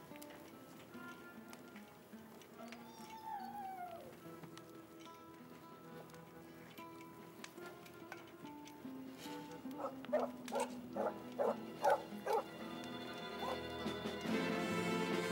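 A dog gives one falling whine, then barks about seven times in quick succession, a little over two barks a second, near the end. Film score music plays underneath.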